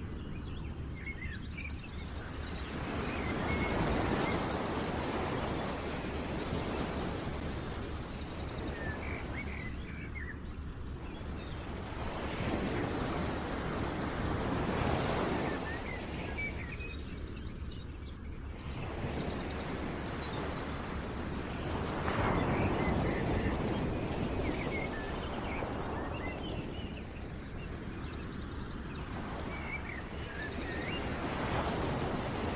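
Nature-ambience background track: a rushing noise that slowly swells and fades every several seconds, with short bird chirps scattered through it.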